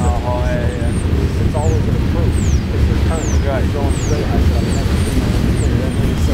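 Covered hopper cars of a freight train rolling past close by, a steady, loud low rumble of wheels on rail.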